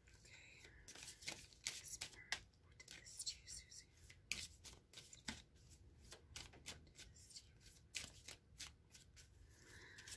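Oracle cards being shuffled by hand: a quiet, irregular run of light card clicks and slaps.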